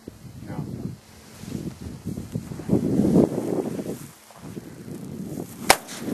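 A single rifle shot fired with a double set trigger: one sharp crack near the end, after low handling and background sound.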